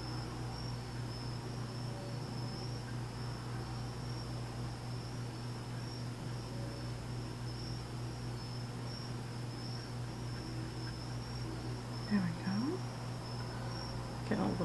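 Steady room tone: a low electrical hum under a continuous thin, high-pitched trill. Near the end there is a short rising vocal sound.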